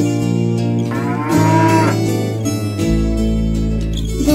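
A bull's moo, once, about a second in, its pitch rising and then falling, over an instrumental children's song backing with held notes.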